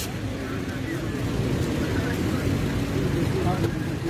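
Steady low rumble of road traffic and idling cars, with people talking indistinctly.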